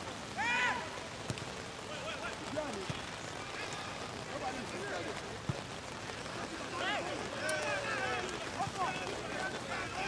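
Players and spectators shouting at an outdoor soccer game over a steady hiss of open-air noise. One loud call comes about half a second in, and several more calls come near the end.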